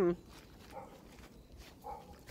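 A dog barking faintly twice, a little over a second apart, after a man's short 'hmm' at the very start.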